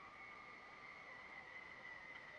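Near silence: only a faint, steady high hum of outdoor background, with no distinct sounds.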